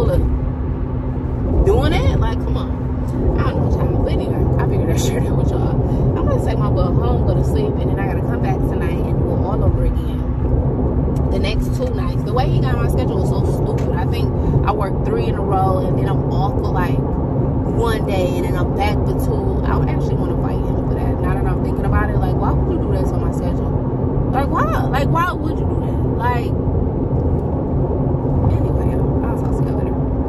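Steady road and engine rumble inside a moving car's cabin, with a woman's voice sounding on and off over it.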